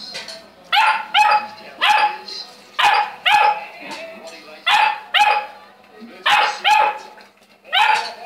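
Saint Bernard puppy barking: about ten short, sharp barks, mostly in quick pairs.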